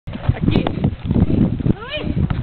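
A low rumble with scattered knocks, and a child's short rising squeal just before the end.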